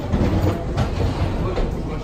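Footsteps knocking on the hollow floor of an airport jet bridge, with a low rumble from the walkway and voices in the background.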